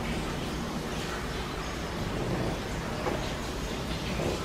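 Steady hiss of background noise, with a faint soft click about three seconds in.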